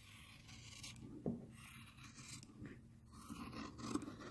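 Sharp Kai fabric scissors cutting through four layers of cotton quilting fabric, faint snipping with one louder click a little after a second in.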